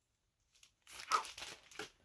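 Plastic comic-book bag crinkling and rustling as a comic and its backing board are pulled out of it, in a burst of about a second in the second half.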